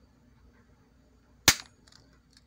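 A Crosman P17 .177 single-pump pneumatic air pistol fires once: a single sharp, short crack about one and a half seconds in.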